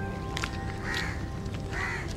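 A crow cawing twice, about a second in and again near the end, over quiet background music.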